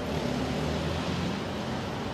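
Steady outdoor background noise: an even hiss with a low rumble underneath, with no distinct events.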